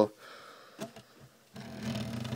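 Faint handling noise of a 1:24 scale diecast stock car being turned around by hand on a wooden tabletop, with a soft click about a second in and a low rubbing rumble in the second half.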